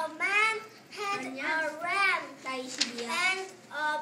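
A young child's high voice reading an English tongue twister aloud slowly, in short drawn-out words with brief pauses between them.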